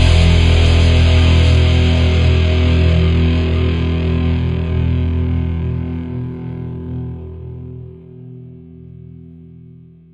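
Final chord of a punk rock song on distorted electric guitar, left ringing and slowly fading away until it has almost died out near the end.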